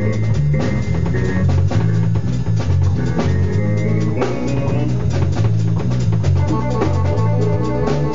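A live band playing an instrumental groove: electric bass guitar and a Yamaha drum kit, with a Korg keyboard joining in with sustained organ-like chords about six seconds in.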